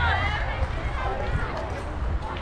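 Indistinct voices of softball players and spectators calling out and chattering, with no words clear; the calls are loudest in the first half-second.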